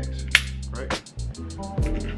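Background music with a steady beat: held bass notes under a run of quick, evenly spaced ticks, with one sharp click about a third of a second in.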